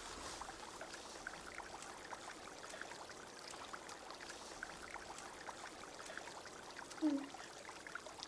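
Faint trickling water with scattered soft drips and ticks, and a short low sound falling in pitch about seven seconds in.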